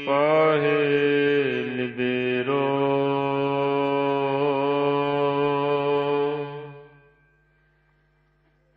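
Gurbani kirtan: a voice sings a long, drawn-out melismatic line of a shabad over a steady drone. The line fades out about seven seconds in.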